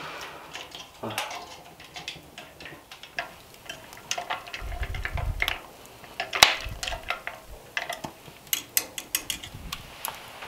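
A spoon stirring eggnog in an earthenware pot on a brazier, knocking and scraping against the pot with scattered sharp clicks, the loudest a little past six seconds in; a brief low rumble about five seconds in. The stirring keeps the egg and milk from scorching on the bottom.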